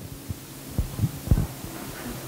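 A few soft, low thumps spread over about a second and a half, over a steady low hum.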